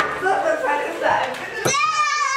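Children's voices, excited high-pitched chatter and shouting, ending in one long high-pitched shout near the end.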